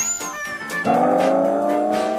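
Cartoon-style comedy sound effects. A whistle glide tops out and falls away, then just under a second in a sustained musical note starts and climbs slowly in pitch.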